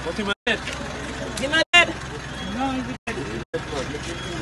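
People talking and a laugh, over a steady low hum. The sound cuts out abruptly for a split second four times.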